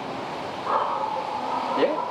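A man laughing, with one long held vocal note in the middle that ends in a short rise.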